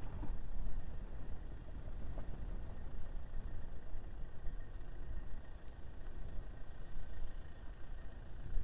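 Distant minibus engine running as the van backs down a steep dirt slope after failing to make the climb: an uneven low rumble with a faint hiss.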